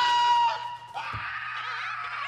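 A man's high, held scream that breaks off about half a second in, followed by a quieter wail that wavers in pitch.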